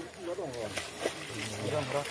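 People's voices talking in the background, with a couple of faint clicks about a second in.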